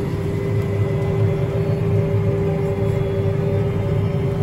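Tractor engine running steadily under the cab, heard from inside, with a constant steady whine over a low hum and no change in pace.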